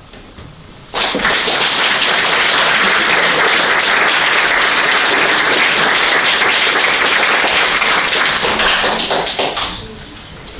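Audience applauding, starting suddenly about a second in and dying away near the end.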